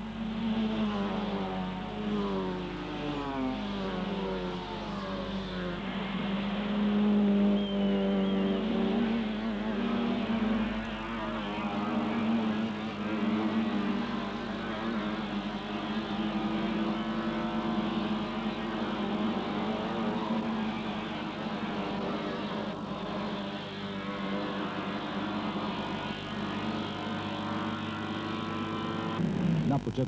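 Racing saloon car engines revving as the cars pass and corner, their pitch rising and falling with throttle and gear changes.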